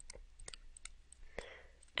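Faint, irregular clicks of a stylus tapping and scratching on a tablet screen while handwriting, about eight to ten light ticks over two seconds.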